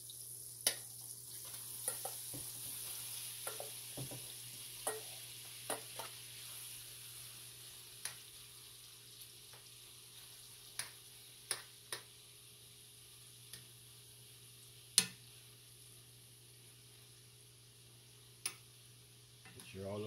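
Shrimp sizzling in melted butter and oil in a frying pan, the sizzle slowly fading. A metal spoon clinks against the pan about ten times as they are stirred.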